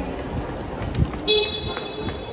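A car horn sounds once, starting a little past a second in and holding for about a second, with a knock just before it.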